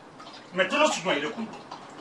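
Speech only: a person speaks a short phrase starting about half a second in, in a small room.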